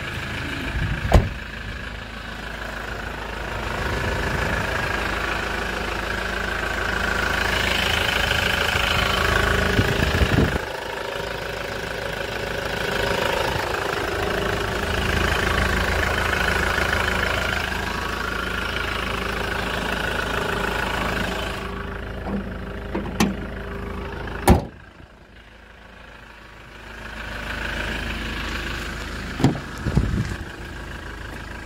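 The 2008 Hyundai Grand Starex van's engine idling steadily, heard through the open engine compartment. A few sharp thuds and clunks come through, the loudest about three-quarters of the way in, after which the engine sounds muffled for a few seconds.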